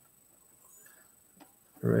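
Near silence: room tone, with one faint click a little past halfway, then a man's voice beginning near the end.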